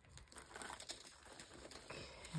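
Faint crinkling and rustling of small plastic drill-storage bags being handled and slotted into a packed storage box.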